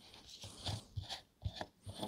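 Boat deck fuel-fill cap being unscrewed by hand from its fill fitting: a few faint, short scrapes as the threads turn.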